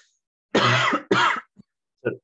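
A man clears his throat twice, two short rough bursts starting about half a second in.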